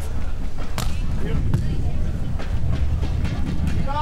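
Strong wind buffeting the microphone, a steady low rumble, with a couple of sharp slaps of hands on the volleyball during the serve and rally, about a second and a second and a half in.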